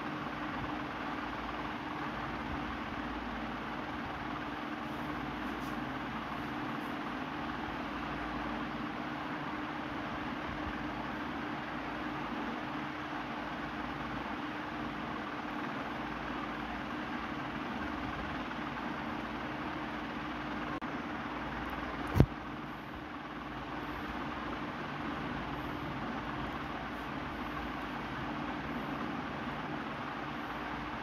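Steady background noise with a low, even hum, broken once by a single sharp click about three-quarters of the way in.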